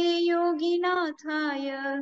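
A woman's solo voice chanting a Sanskrit devotional verse to Mahavira, sung on long held notes with a brief break about a second in.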